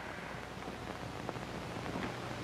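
Hiss and faint crackle of an old, worn TV soundtrack, over a steady low hum.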